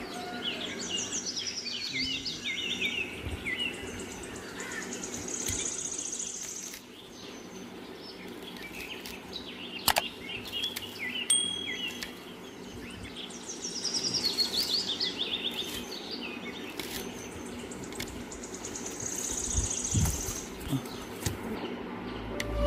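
Birds singing outdoors: a run of quick chirps stepping down in pitch near the start and again about halfway, and a fast high trill a few seconds after each. A single sharp click comes about ten seconds in.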